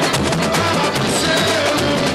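Samba school bateria (drum section) playing a samba groove at full volume: a dense, rapid stream of tamborim and drum strikes over a steady pulse of low bass-drum beats.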